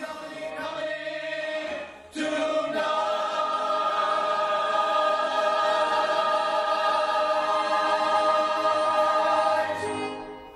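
Background music with a choir singing, which rises about two seconds in to a loud, long-held final chord.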